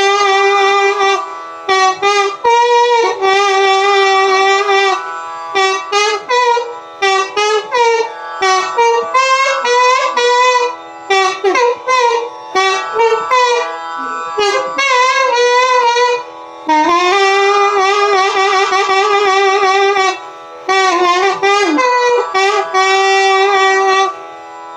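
Long transverse flute playing phrases in raga Sindhu Bhairavi: held notes bent with slides, and quick runs, broken by short gaps between phrases.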